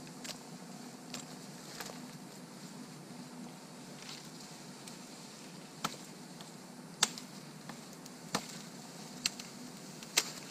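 Hatchet chopping at a thin birch pole: sharp, irregular single strikes, a few light ones in the first two seconds and louder ones in the second half, the loudest about seven seconds in.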